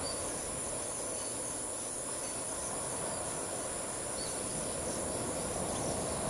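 Steady high-pitched trilling of insects, with an even wash of sea surf beneath it and a few faint short bird chirps.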